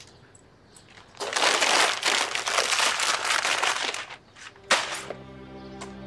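Paper bag crinkling and rustling for a few seconds as it is handled, ending in a sharp crack; steady background music comes in near the end.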